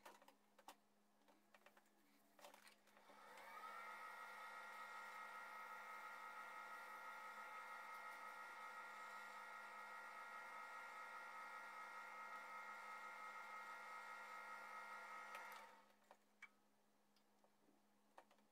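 Wood lathe running: a quiet, steady motor whine of several tones that comes up to speed about three seconds in and stops fairly sharply near the end. A cloth is being held against the spinning turned box lid to polish it.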